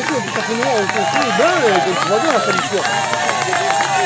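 BMX race spectators shouting and cheering, many voices overlapping as the riders come through to the finish.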